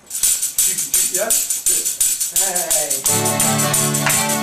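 Tambourine shaken in a steady beat, starting right at the beginning. About three seconds in, strummed guitar chords join it.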